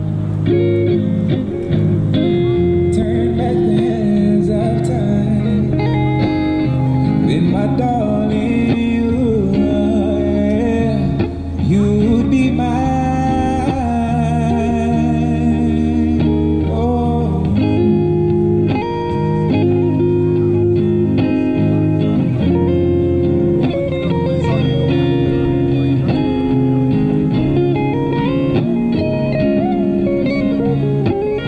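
Busker's amplified electric guitar playing a melody of bending, wavering notes over sustained low bass notes, the bass line changing about halfway through.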